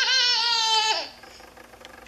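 A small child's high-pitched voice holding one long, wavering note, which falls in pitch and stops about a second in.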